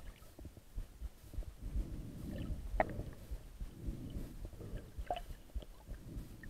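Underwater sound heard through a submerged camera: a muffled low rumble of moving water that swells and fades every second or two, with a few faint sharp clicks, the clearest about three seconds in.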